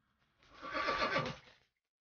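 A single whinny-like animal call, about a second long, with a wavering, falling pitch.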